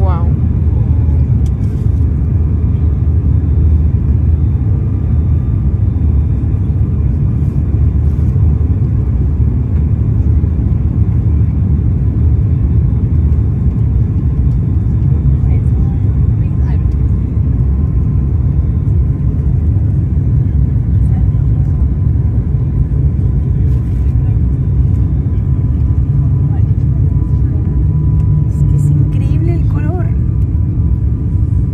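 Cabin noise of an ATR 72 turboprop airliner on approach: the steady, loud low drone of its engines and propellers, with a faint steady whine above it.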